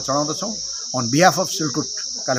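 Steady high-pitched insect chirring behind a man talking.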